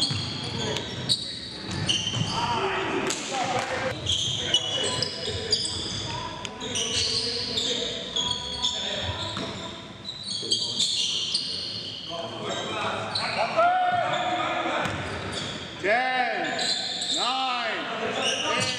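Basketball game in a gym: the ball bouncing on the hardwood court, sneakers squeaking sharply on the floor, and players calling out, all echoing in the large hall.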